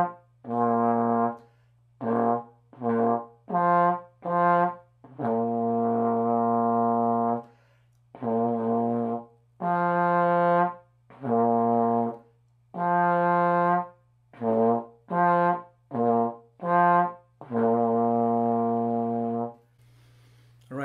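Solo trombone playing a slow warm-up of separate, tongued low notes, mostly short with two long held notes, one in the middle and one near the end. The notes are changed with the lips alone while the slide stays in first position.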